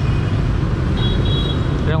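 Motorbike engine and road noise as the bike rides off, a steady low rumble.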